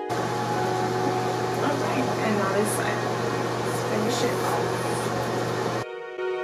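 Unscored room sound in a small bathroom: a steady low hum under an even hiss, with a faint voice and a few brief soft rustles.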